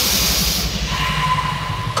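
Makina rave mix intro: a burst of white-noise hiss over a pulsing bass layer, then a steady high synth tone held from about a second in.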